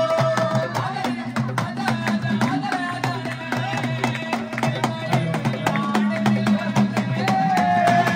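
Live Indian devotional music through a PA: a harmonium holding the tune over a steady beat of dholak and hand percussion.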